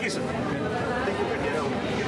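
Several people talking over one another: crowd chatter with no single clear voice.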